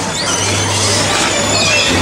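Electric bumper car running with a steady low hum, over music from the ride's sound system.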